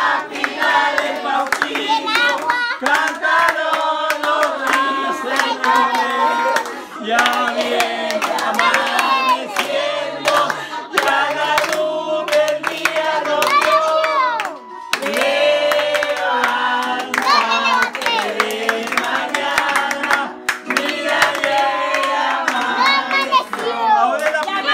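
A group of family voices singing a birthday song together, with hand clapping along throughout.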